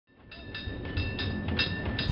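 Cable car running on its street rails, fading in: a low rumble with a ringing that repeats about four times a second.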